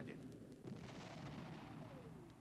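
Faint distant artillery fire, a low rumble under the film's quiet background that swells slightly about half a second in.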